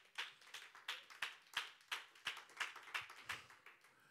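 Steady rhythmic hand clapping, about three claps a second, stopping shortly before the end.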